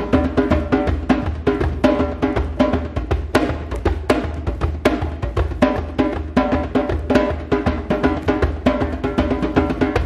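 Hand drum played live with a quick, steady rhythm of slapped and open strokes, with sustained pitched notes from a melodic instrument underneath.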